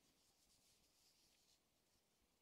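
Near silence: faint room hiss.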